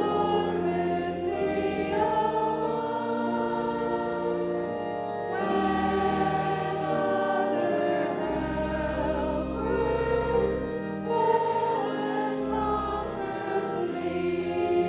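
Congregation singing a hymn together, with sustained instrumental accompaniment and long, low bass notes.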